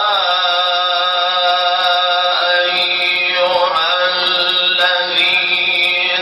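Male Quran reciter chanting in melodic tajwid style, drawing out one long unbroken phrase whose pitch turns in ornaments several times.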